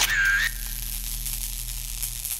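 Channel logo sting sound effect: a brief whistle-like tone that ends about half a second in, then a steady high shimmering hiss over a faint low hum.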